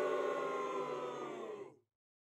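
Transition sound effect: a held tone of several pitches that sags slightly and fades out after about a second and a half, then stops dead into silence.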